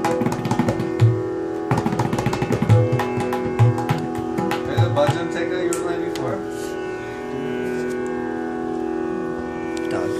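Tabla played by hand, with crisp strokes on the right-hand drum and deep bass strokes on the metal-shelled left-hand drum, over a steady held drone. The strokes are dense for the first half and thin out after about five seconds while the drone carries on.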